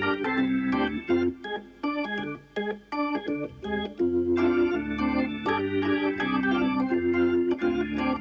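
Organ intermission music playing held chords, thinning to a sparser, quieter passage for a couple of seconds before the full chords return about halfway through.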